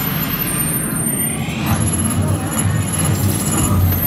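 Attraction sound effects for a hand scan in progress: a low electronic rumble that swells toward the end, with faint high steady tones above it.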